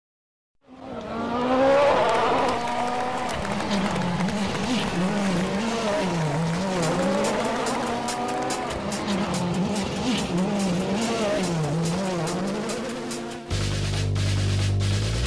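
Rally car engine revving up and down over and over as it goes through the gears, with sharp crackles in the second half, mixed with music. Near the end a music track takes over.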